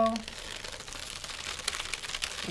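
Freezer paper stencil being peeled up off a coir doormat, the paper crinkling with a run of small crackles as it pulls away from the bristles.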